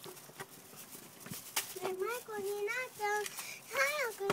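A few footsteps on a concrete path, then from about two seconds in a young girl sings a tune in a high voice, holding notes and stepping between them.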